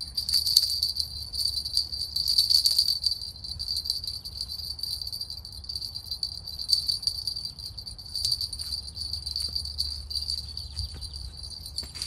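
Spinning reel being cranked to retrieve line, a steady high whirring with fine rapid ticking that starts suddenly and stops near the end.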